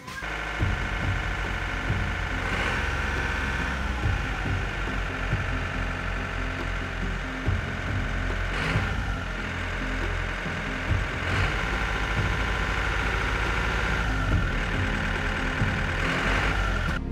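Game-drive vehicle's engine running as it drives along a dirt track, under background music. The engine rumble starts suddenly at the beginning and runs steadily.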